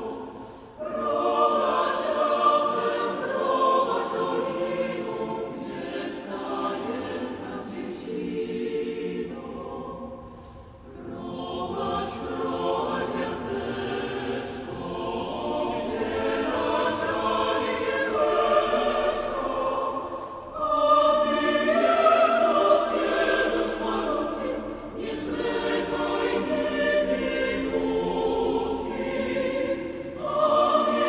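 Mixed choir singing a traditional Polish Christmas carol in several-part harmony. It sings in long phrases, with short breaks about a second in, at about ten seconds and at about twenty seconds.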